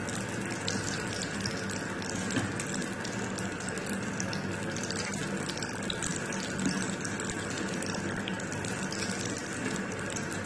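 Samosas frying in hot oil in a pan: a steady sizzle with dense fine crackling, over a low steady hum, with a couple of light knocks as tongs lift pieces out.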